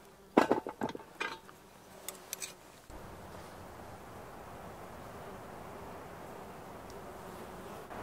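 A few sharp clanks of a cast-iron lid being set on a cast-iron pan, followed by a steady outdoor background hum of buzzing insects.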